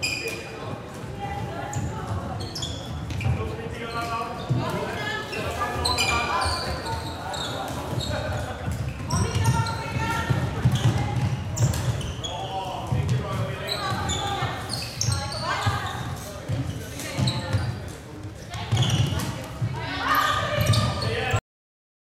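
Floorball game in play: players' voices calling out and echoing in a large sports hall, with scattered knocks of sticks, ball and feet on the court. The sound cuts off suddenly near the end.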